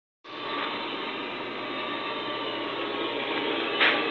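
Small powered loudspeaker playing the live audio feed from the animal-house monitoring stations, heard as a steady rushing hiss. It starts abruptly just after a moment of silence, grows slightly louder, and has a brief sharper sound near the end.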